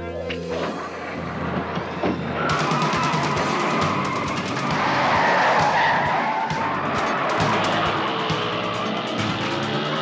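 Black 1982 Pontiac Trans Am pulling away hard with a long tyre squeal that sets in about two and a half seconds in and is loudest midway, over background music.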